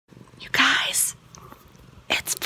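A person whispering briefly, a breathy burst about half a second in, in a quiet room.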